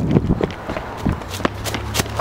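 Hurried footsteps with irregular sharp clicks and scuffing, close to a handheld camera.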